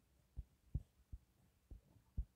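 Near silence with a few faint, short low thuds spread across the two seconds.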